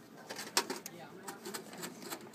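A folded paper slip crinkling and crackling in the fingers as it is pulled from the box and unfolded, in quick irregular crackles with the sharpest one about half a second in, over a low room murmur.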